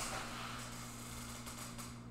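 Steady low electrical hum with hiss from the recording setup. A rush of noise fades over the first half second, and a few faint rustles come near the end.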